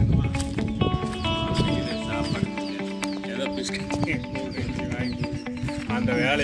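Background music with sustained instrumental notes changing in steps.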